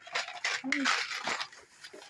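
A cardboard box packed with paint brushes and palette knives being jostled, the handles clattering against each other, dying away after about a second and a half.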